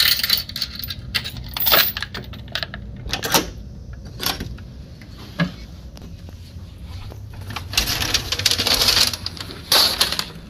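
Metal door security chain being handled, rattling and clicking in several short jangles, with a single sharp click about halfway through. Near the end comes a longer scraping rustle, followed by one more clatter.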